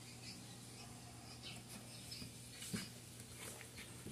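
Quiet scratching and faint high squeaks of a felt-tip pen drawing on a plastic bottle, with a soft knock nearly three seconds in.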